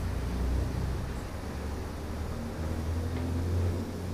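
A low, steady background hum with no speech over it.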